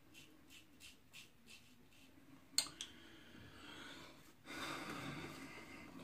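Faint short scrapes of a double-edge safety razor with a Wilkinson Sword Classic blade cutting stubble, about three strokes a second. Near the middle there is one sharp click, followed by a soft rushing sound like breathing that grows louder near the end.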